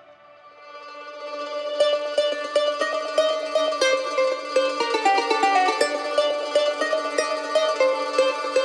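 Background music: a quick, plucked-string instrumental tune fades in from a quiet start and plays at full level from about two seconds in.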